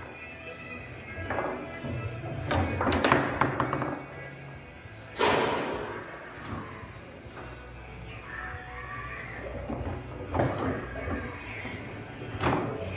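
Foosball play: the ball and the rod figures knock against each other and the table in sharp impacts, several in quick succession about three seconds in and the loudest about five seconds in, over background music.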